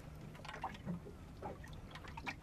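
Small waves lapping and splashing softly against a boat's hull, a few light splashes over a low steady rumble.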